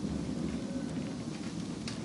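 Steady low rumble and hiss of a bus interior, with a faint click near the end.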